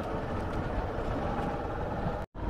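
Hero Super Splendor motorcycle's single-cylinder engine running steadily while riding, with road and wind noise, heard from the pillion seat.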